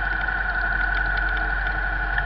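Low engine rumble of traffic moving at a crawl, heard from inside a car cabin through a dashcam, under a steady high-pitched whine.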